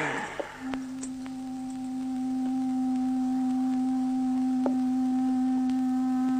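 Background music: one long, steady low note on a woodwind instrument, starting about half a second in.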